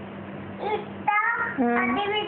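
A child's voice singing a few long, held notes, starting about a second in over a low steady room hum.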